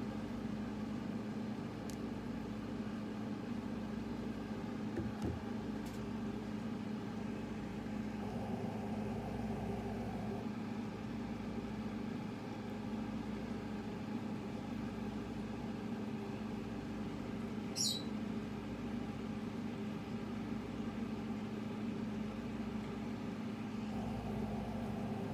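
A steady low mechanical hum, like a fan or appliance running, with a faint click about five seconds in and a short high chirp near the end.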